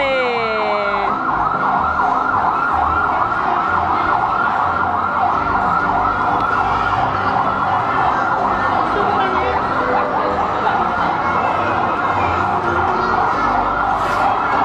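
Electronic siren of a small ride-on ambulance sounding a fast yelp that warbles up and down about six times a second without a break, with a short falling chirp right at the start.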